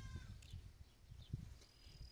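Near silence: faint low background rumble, with a thin high tone fading out in the first half second.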